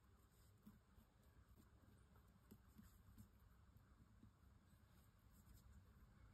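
Near silence, with faint scratching of a small paintbrush working wet ink into a die-cut cardstock log.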